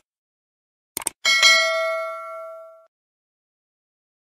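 Two quick mouse clicks about a second in, followed at once by a bright notification-bell ding that rings out and fades over about a second and a half: the sound effect of an animated subscribe-button overlay.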